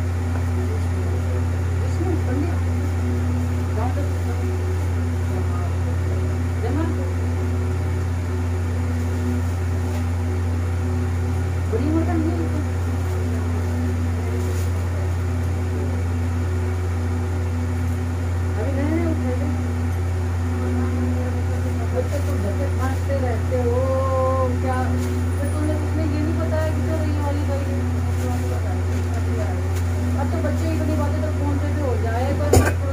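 A steady low hum, with quiet murmured voices over it now and then, most around the middle and near the end.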